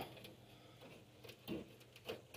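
Near silence: quiet room tone.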